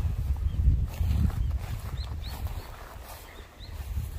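Low rumbling noise on a handheld camera's microphone as it is carried along the garden beds, loudest in the first second and a half. Over it come about half a dozen faint, short high chirps from small birds.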